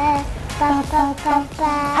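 A young girl singing a song in a series of held notes, with no words spoken between them.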